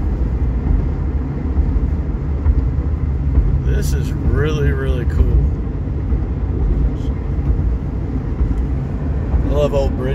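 Steady road and engine rumble inside a truck's cabin at highway speed. A voice is heard briefly about four seconds in and again near the end.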